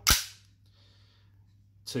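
One sharp metallic snap from the slide of an Armorer Works Canik TP9 gas blowback airsoft pistol being worked by hand, just after the start.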